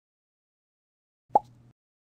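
A single short cartoon 'plop' sound effect a little over a second in, for the animated frog hopping onto a lily pad.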